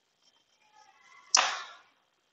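One quick swish of a cloth wiped across a whiteboard, starting suddenly about a second and a half in and fading within half a second.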